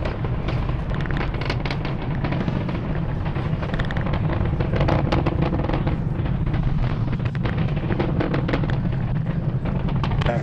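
Falcon 9 first stage's nine Merlin engines running in flight, throttled down for Max-Q: a steady deep rumble thick with sharp crackling.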